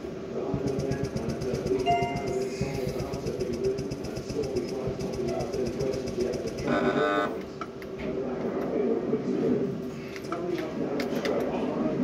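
Electronic roulette terminal's sound effects as chips are placed and games play, with a short chime about seven seconds in, over background voices and music.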